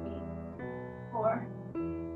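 Piano accompaniment playing ballet-class music through a video call, a new chord struck about every half second, with one short spoken word about a second in.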